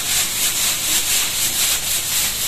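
Quick, even scraping strokes across a flat dosa griddle, about four or five a second.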